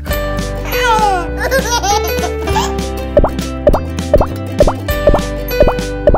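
Light background music overlaid with cartoon sound effects. There is a quick flurry of falling-pitch squeaks in the first couple of seconds, then short plopping pops about twice a second, the pops marking each gummy cherry appearing in stop-motion.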